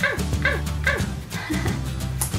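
A small dog yipping three times in quick succession, about half a second apart, each yip dropping in pitch, over background music.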